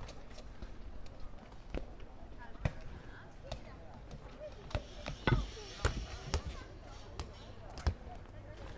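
A ball bouncing on paving: a run of irregularly spaced thuds, the loudest clustered a little past the middle, with voices in the background.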